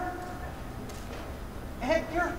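A man's wordless, quavering vocal sound, broken into short arching notes, heard briefly near the end. In between there is only a low steady room hum.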